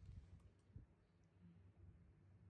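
Near silence, with a few faint clicks and soft low thumps, the clearest a little under a second in.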